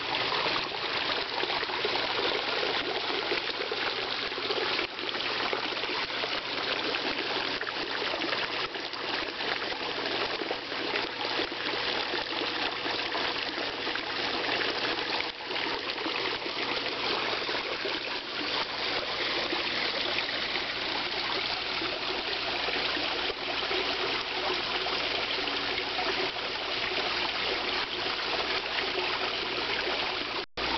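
Water falling into a koi pond from a bamboo spout and a small rock waterfall: a steady trickling, splashing rush.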